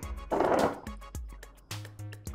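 A wooden spoon stirring a thin flour-and-cornstarch batter in a glass bowl: a short wet scraping swish about half a second in. Light background music plays under it.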